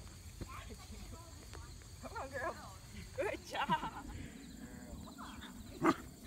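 A four-month-old puppy barking and yipping at a helper during bite-work training: short high-pitched barks come in two quick clusters, about two seconds in and again around three and a half seconds in. A sharp loud sound comes just before the end.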